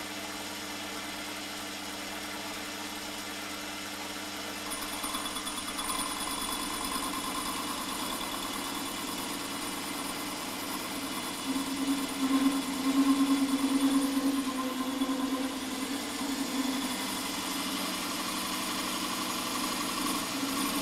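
Holzmann ED 750 FDQ bench lathe running steadily, its carbide-insert tool facing the end of a stainless steel tube at minimal feed. A higher whine joins the motor hum about five seconds in, and the sound swells for a few seconds around the middle.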